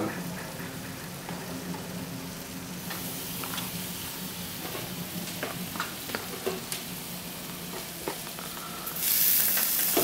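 Steady sizzling hiss and low hum from a hot electric range, with a pan of tomato sauce and meatballs simmering on a burner and the oven door open, plus soft scattered taps as slices of fresh mozzarella are laid on pizza dough. The hiss gets louder near the end.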